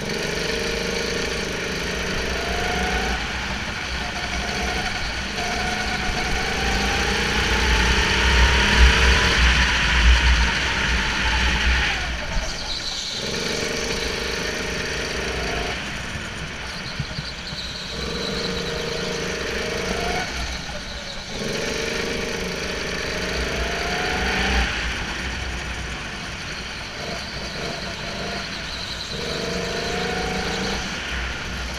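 Go-kart engine heard from the driver's seat, its pitch rising as it pulls along each straight and dropping away whenever the throttle is lifted for a corner, about six times. The longest and loudest pull comes about a third of the way through.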